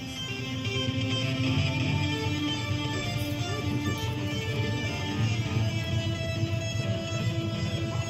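Electric guitar music with sustained, ringing notes, played through an exhibit's loudspeakers.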